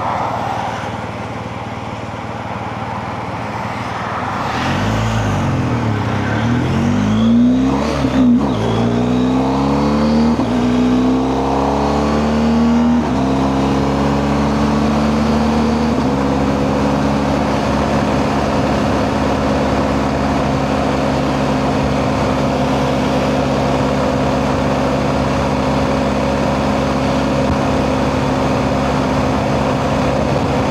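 BMW R 1250 GS boxer-twin engine pulling away and accelerating hard. From about four seconds in, its pitch climbs through several upshifts. From about sixteen seconds in it settles into a steady run at highway cruising speed, over a constant rush of noise.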